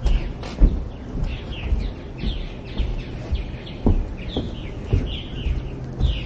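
Birds chirping outdoors: a busy run of short, falling chirps repeated many times over. A few low thumps of footsteps on the balcony deck come in between, the loudest about half a second in.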